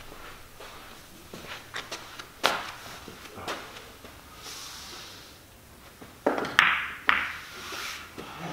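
Pool balls clicking and knocking during a game of eight ball: a few light scattered clicks, then three louder knocks close together about six to seven seconds in.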